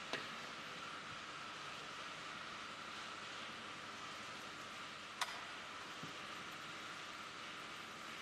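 Steady hiss of room noise, with one sharp click about five seconds in: a match air rifle firing a shot.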